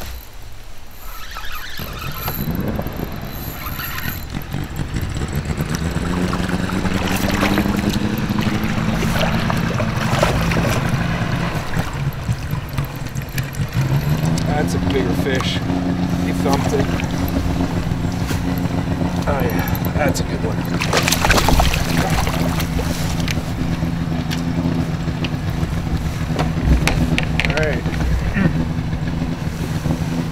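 A boat's engine runs steadily nearby. Its pitch rises about two seconds in and steps up again about halfway through, with scattered knocks and clicks over it.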